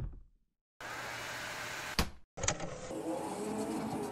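Cartoon sound effect of a motorised mechanical arm retracting: a knock, then two stretches of steady whirring motor noise, each ending in a sharp click.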